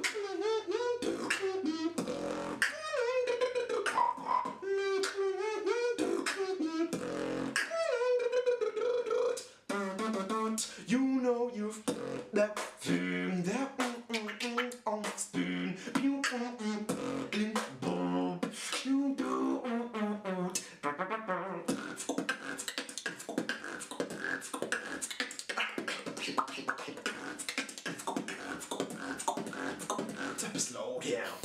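Solo human beatboxing: sharp mouth-made kicks, snares and clicks under a hummed, bending melody line. From about two-thirds of the way through, the beat turns into a faster, denser run of clicks.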